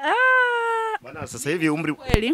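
A woman's drawn-out, high-pitched hesitation sound (a long 'eeeh') lasting about a second, rising at the start and then sinking slowly. It is followed by brief low murmured speech.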